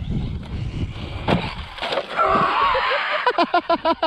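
Low rumbling noise with a sharp knock about a second in, then the wavering whine of a 1/10 electric RC truggy's motor under throttle, and laughter near the end.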